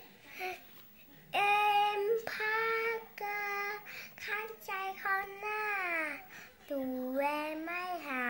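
Young girl singing unaccompanied, starting about a second in: a string of held notes, several sliding down in pitch, with short breaks between phrases.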